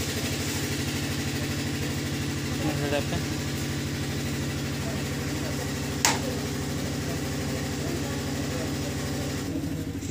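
A low engine hum, steady and pulsing evenly, as of an engine idling. A faint voice comes in briefly about three seconds in, and there is a single sharp click about six seconds in.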